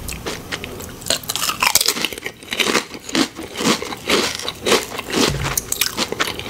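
Wavy-cut potato chip bitten and chewed close to the microphone: a quick run of sharp, crackly crunches.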